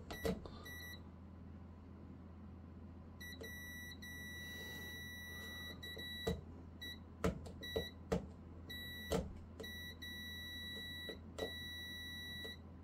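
Digital multimeter in continuity mode beeping with a steady high tone, on and off several times: a short beep near the start, one long beep of about three seconds, then a string of shorter ones. Each beep signals a closed electrical connection between the probed rails of N-gauge model railway track, with a few sharp clicks in between.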